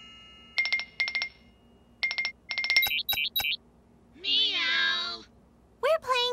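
Cartoon laptop sound effects: short electronic beeps in pairs, then a quick run of higher blips, like a video call being placed. About four seconds in, a cartoon cat's meow lasting about a second.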